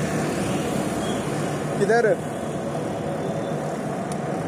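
Steady rushing noise of riding a bicycle along a city street, wind on a hand-held microphone mixed with road noise, broken by one short spoken call about two seconds in.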